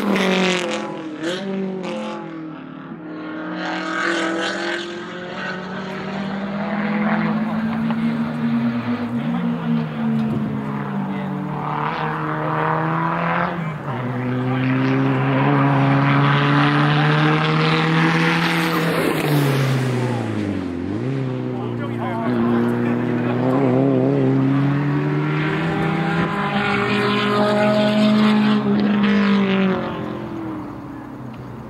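Race car engines lapping a road course, one passing close at the start and others carrying on around the circuit. Their pitch climbs as they rev up through the gears and drops off as they ease off, over and over, with two sharp dips in pitch, about nine and twenty-one seconds in.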